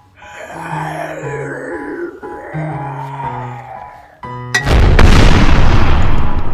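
Outro music with two swooping whoosh effects, then a sudden loud blast of noise about four and a half seconds in that carries on. It is a comic exhaust-blast sound effect for a cartoon puff of smoke from a car's tailpipe.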